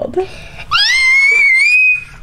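A young girl's high-pitched excited squeal, rising in pitch and then held for over a second, starting a little way in after a brief spoken sound.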